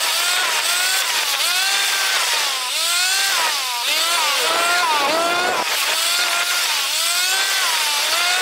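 Motor scooter engine revving up and easing off again and again, its pitch rising and falling about once a second, with wind rushing over the microphone.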